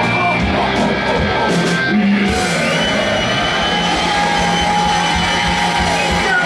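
Live rock band playing loudly: electric guitar and drum kit, with the busy beat giving way to long sustained notes about two seconds in.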